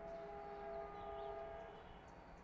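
Faint, distant blast of a diesel locomotive's twin-tone horn: a steady chord held for just under two seconds, then cut off. It comes from the EMD WDP4 at the head of a departing train.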